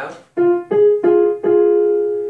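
Electric keyboard playing a two-note interval, F and G sharp, for an ear-training test: the notes are struck four times in quick succession, the last time held together and left to fade slowly.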